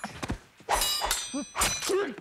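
Movie fight sound effects: a thud, then two clashes of sword blades with a metallic ring, mixed with short grunts.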